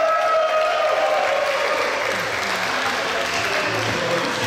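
Audience applauding, with a long held vocal call fading out in the first second. Music begins to come in faintly in the second half.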